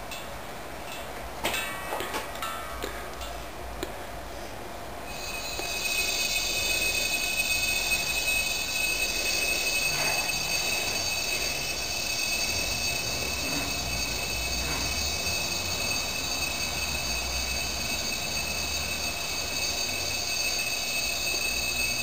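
Compressed air hissing and whistling steadily through a hose fitting as a converted propane-tank pressure chamber is filled, starting about five seconds in after a few clicks of handling. This is the chamber being pressurised to test an oil pressure switch.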